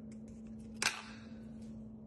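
A single sharp click a little under a second in, over a steady low hum, with a few fainter small clicks around it.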